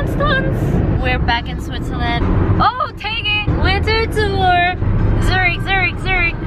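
People's voices in a moving car, over the steady low rumble of road and engine noise heard inside the cabin.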